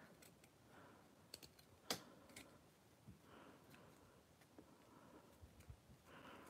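Near silence broken by a few faint clicks and taps, the sharpest about two seconds in: a metal hand file and a small plastic part being handled while the part is trimmed.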